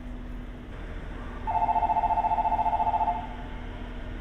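Electronic platform departure bell: a rapid two-tone trill lasting under two seconds, starting about one and a half seconds in, signalling that the train is about to leave.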